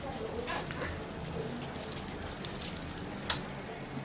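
Light clinks and jingles of a bead necklace being handled and put on, with a sharper click about three seconds in.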